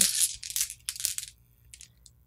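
Small polished rune stones clicking and scraping against each other inside a cloth pouch as one is drawn out. A run of small clicks fades over the first second or so, then a few faint clicks come near the end.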